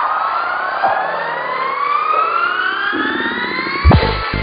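An electronic dance track building up: a synth sweep with several layered tones rises steadily in pitch. Just before the end it lands on a loud low hit as the beat drops.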